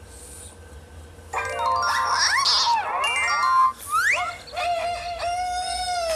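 Cartoon children's music soundtrack: quiet for about the first second, then sliding, whistle-like musical effects that swoop up and down, and near the end a long held cartoon rooster crow that starts to fall in pitch.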